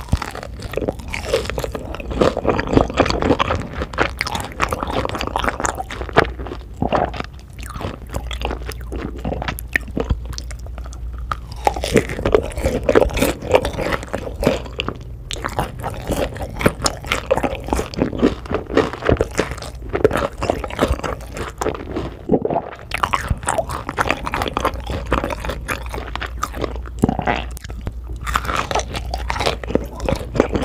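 Close-miked eating sounds: a person biting into a sauce-glazed fried piece and chewing it, with dense wet clicks in bursts broken by a few short pauses.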